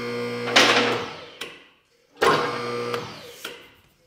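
Two-post lift's electric hydraulic pump motor running in two short bursts with a gap between them. Each burst starts abruptly and winds down as the over-height limit switch at the top of the column cuts the power.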